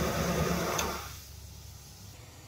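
Air rushing out of a pipe-organ reservoir's safety exhaust valve, with a paper strip in the opening fluttering rapidly in the airflow; it cuts off about a second in as the valve closes. The valve opens when the bellows have risen too far, venting the excess wind pressure.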